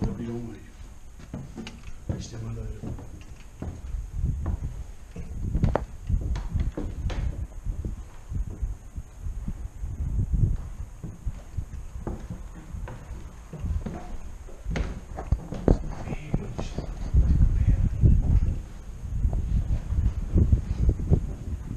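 Irregular footsteps and thumps, with debris crunching underfoot, on a rubble-strewn floor and wooden stairs. The thumping is heaviest near the end. A few low voices are heard in the first seconds.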